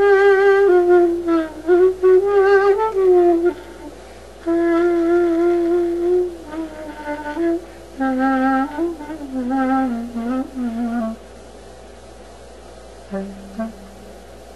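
Clarinet playing an ornamented melody with a wavy vibrato, moving down to lower notes and stopping about 11 seconds in, followed by one short low note near the end.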